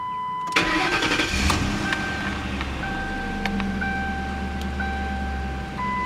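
2007 Ford Crown Victoria Police Interceptor's 4.6-litre V8 cranking and catching about half a second in, then settling into a steady idle, heard from inside the cabin. A thin steady tone sounds over it.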